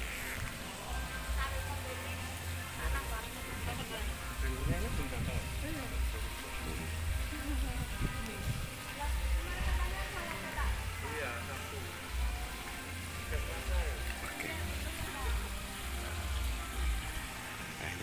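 Outdoor ambience: faint voices and background music over the steady splashing of a fountain, with a low rumble underneath.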